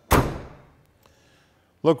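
Trunk lid of a 1965 Pontiac GTO shut by hand: one solid thunk right at the start, dying away over about half a second.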